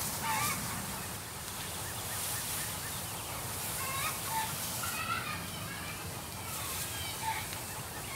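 Hand-pump garden sprayer misting spray onto fruit-tree leaves, a faint steady hiss, with birds calling off and on in the background.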